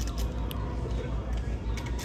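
Steady low room hum with faint scattered clicks and rustles, as a plush dog toy is handled.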